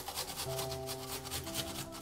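Peeled fresh ginger being grated on a flat stainless-steel grater: quick scraping strokes repeated several times a second, under soft background music.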